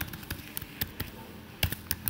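Computer keyboard keys being tapped as a password is typed: a handful of separate, irregularly spaced keystrokes.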